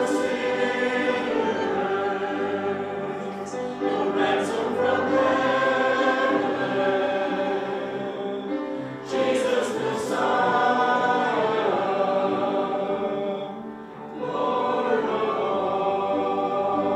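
A church congregation singing a contemporary worship song together, in long phrases with short breaks for breath about every five seconds.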